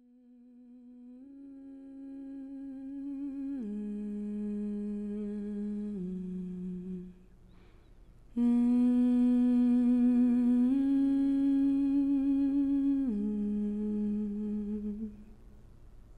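A single voice humming a slow melody in two phrases of long, wavering held notes that step down in pitch. The first phrase swells in and breaks off about halfway; the second comes in louder and fades out near the end.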